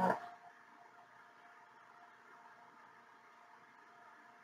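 A woman's word trailing off in the first half-second, then near silence: room tone with a faint steady hum.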